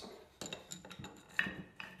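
Light metallic knocks and clinks as a disassembled air compressor pump block is handled and shifted on a wooden workbench, the sharpest knock, with a brief ring, coming about a second and a half in.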